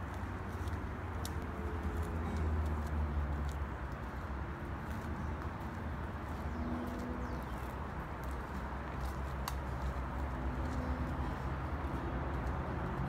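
Outdoor ambience: a steady low rumble with a few scattered faint clicks and taps.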